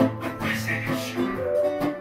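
An acoustic guitar and an electric guitar playing an instrumental passage together, with strummed chords under single held notes.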